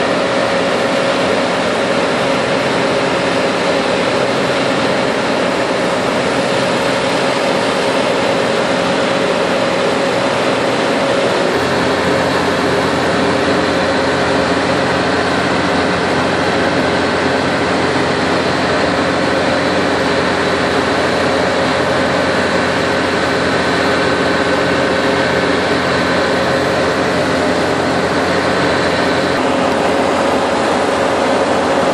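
Diesel power packs of a self-propelled modular transporter (SPMT) running steadily, carrying a 180-tonne load, with a hum and a faint high whine. The low rumble steps up about a third of the way in.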